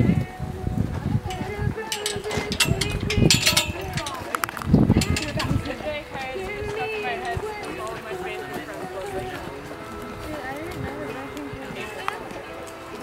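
Horse's hoofbeats on arena dirt in the first few seconds as it moves away, loudest about five seconds in. Faint background music and voices carry on after them.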